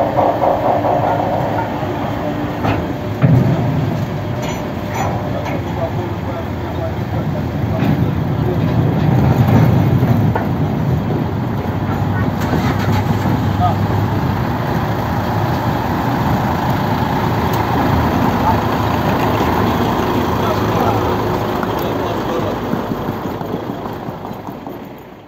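Voices of a crowd of ferry passengers chattering over a steady low engine rumble. There is a single sharp knock about three seconds in.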